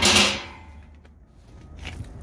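A short scraping rustle as a hand handles the galvanized steel shelf and its removable dividers, fading within half a second, followed by a few faint light clicks.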